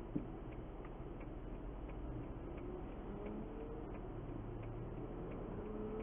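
Car's turn-signal indicator ticking evenly, about two to three ticks a second, over a low steady hum while the car sits stopped at the lights. A single brief knock sounds just after the start.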